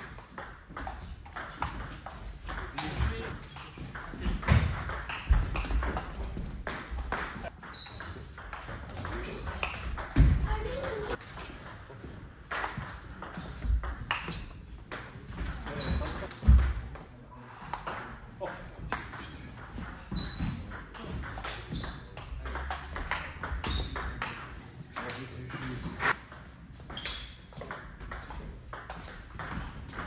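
Table tennis rallies: the plastic ball clicking back and forth off the paddles and the table in quick runs of strokes, with short pauses between points.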